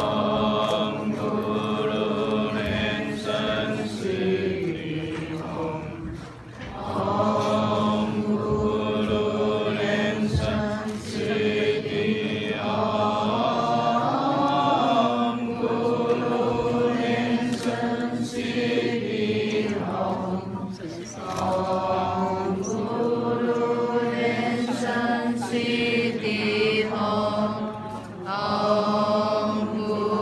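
A group of voices chanting a Buddhist mantra in unison, in long held phrases with a brief pause for breath every several seconds.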